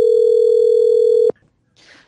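Telephone ringback tone as a call is placed to the guest: one steady tone, about two seconds long, that cuts off suddenly just over a second in. A faint noise follows just before the end.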